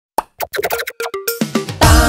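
A quickening run of cartoon pop sound effects, like popcorn kernels popping, some with short pitched blips. Near the end they run into a bright children's music jingle.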